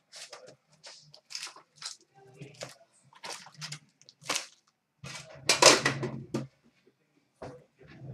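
Hockey card packs and their box being handled on a glass counter: a string of short rustles and knocks, with a louder stretch of rustling about five seconds in as the packs are taken out and set down.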